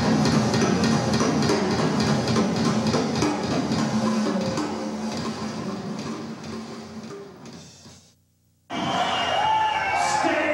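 Heavy metal band playing live, with drums, fading out over about four seconds to silence just past eight seconds in. New music starts under a second later.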